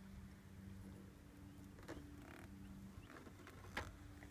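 Faint handling of a billet aluminium oil catch can as its canister is unscrewed and lifted out. Two light metal clicks come about two seconds in and near the end, over a low steady hum.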